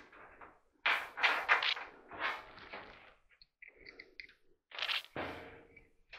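Scuffing and scraping from someone bracing a leg against a dryer's sheet-metal cabinet and working at it by hand: several short irregular scrapes, with a few brief faint squeaks in the middle.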